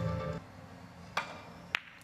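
Carom billiard balls and cue clicking during a three-cushion shot: two sharp clicks, the first a little over a second in and the second about half a second later.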